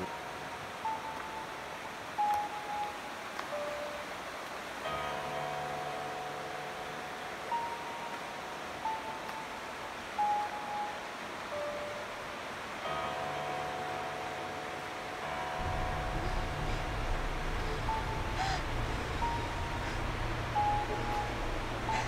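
Background music: a slow melody of single held notes stepping between pitches, with sustained chords joining in twice. A low bass line comes in about two-thirds of the way through.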